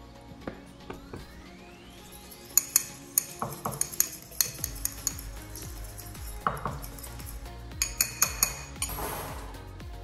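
A metal fork whisking barbecue sauce and hot sauce in a small glass bowl, clinking and tapping repeatedly against the glass, starting about two and a half seconds in. Background music plays underneath.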